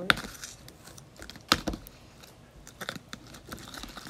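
A spoon stirring freshly activated slime in a mixing container: a few sharp clicks of the spoon against the container, with quieter sticky handling sounds between them.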